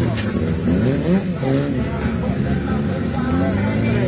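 Autocross car engines revving, their pitch repeatedly rising and falling, several engines overlapping.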